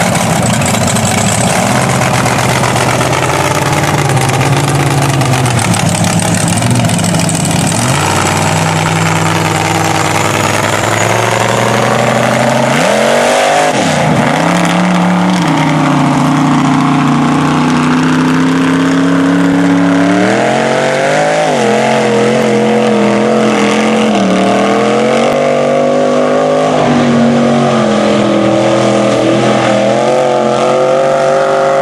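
Mega mud truck's engine running loud under throttle as the truck drives through the mud pit, its pitch climbing and falling. About halfway through, the revs drop sharply, then rise again and keep swinging up and down.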